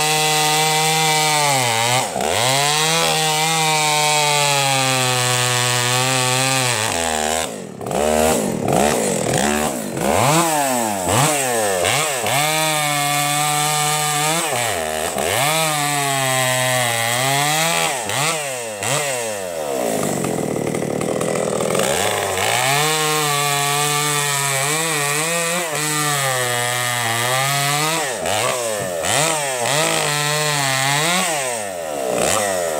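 Husqvarna two-stroke chainsaw bucking logs, run at full throttle, its pitch sagging and recovering again and again as the chain bites into the wood. It drops to a lower note for a couple of seconds about two-thirds of the way through, then goes back to full revs.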